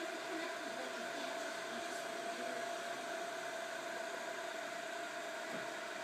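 Cooling fans of a 3 W, 635 nm red diode laser system running: a steady whir with a constant mid-pitched hum.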